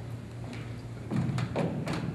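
A few quick thumps and taps close to the lectern microphone, starting about a second in, over a steady low electrical hum.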